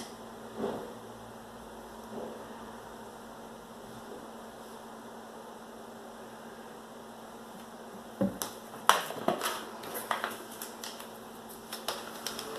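Faint room tone while Floetrol pours from a plastic bottle into a plastic cup. From about eight seconds in comes a run of light clicks and knocks from the plastic bottle and cups being handled on the table.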